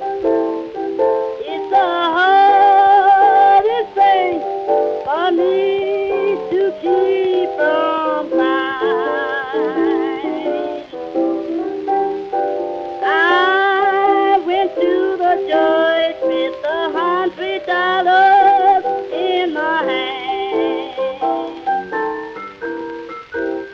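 Early blues record, a mid-1920s recording: piano chords under a lead melody of long held notes with a wide wavering vibrato. The sound has the dull, treble-less tone of an old record transfer.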